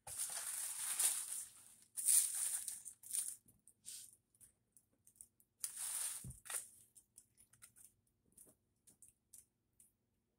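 Plastic wig packaging rustling and crinkling in three bursts as a wig is unwrapped and handled, then a run of small sharp snips and clicks as tags are cut off with small scissors.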